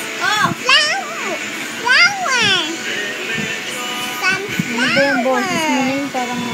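A child's high-pitched voice giving several short calls whose pitch slides up and down, over faint background music.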